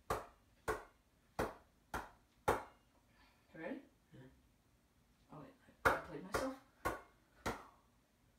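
A hand slapping a basketball that spins on a fingertip, keeping it spinning. The slaps are sharp and come about every half second, in a run of five near the start and a run of four near the end.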